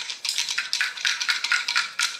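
Ice rattling and clinking against a drinking glass as an iced matcha is stirred with a straw: a quick, uneven run of small clicks.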